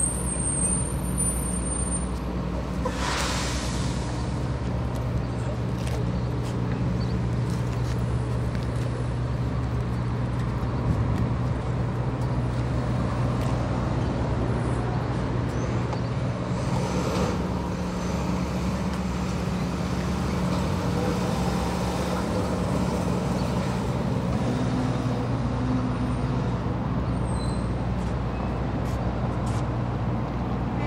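Street traffic with a steady low engine hum, broken by a short hiss about three seconds in and another about halfway through.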